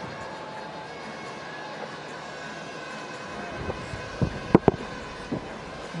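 Steady background noise of a cricket ground broadcast, with low thuds starting about three and a half seconds in and two sharp knocks just after four and a half seconds, the loudest moment.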